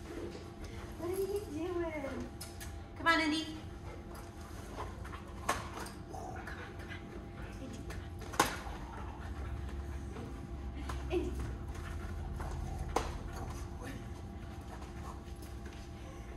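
Wordless voice sounds coaxing a dog in the first few seconds, the loudest about three seconds in. Then a few sharp knocks or taps over a steady low hum.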